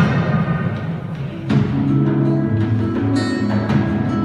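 Live flamenco-jazz band playing a fandango: acoustic guitar, bass and hand percussion. The music thins out for the first second and a half, then comes back in with a strike and held low bass notes.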